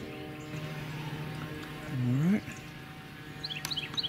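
A steady low hum made of several even tones, and near the end a bird's quick run of short, high chirps.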